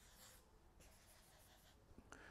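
Faint strokes of a marker pen on flip-chart paper, with the soft hiss of the tip dragging across the sheet, over quiet room tone.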